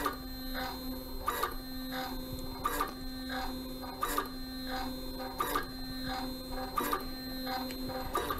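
Grundfos Smart Digital DDA diaphragm dosing pump running: its stepper motor hums steadily, with a click at each stroke, the loudest about every 1.3 seconds. Air is reaching the dosing head, which costs the pump its compression.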